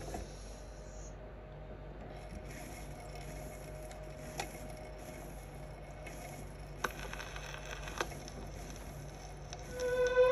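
Turntable stylus tracking the lead-in groove of an early-1950s Royale record: steady surface hiss and a low hum, broken by a few sharp clicks. Orchestral music begins right at the end.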